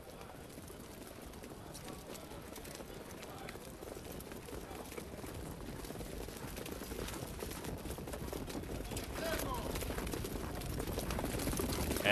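Harness pacers and the mobile starting-gate truck coming up to the start: a rushing noise dotted with hoof clicks that builds steadily louder as the field approaches.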